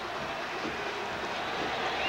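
Steady stadium crowd noise heard through the television broadcast.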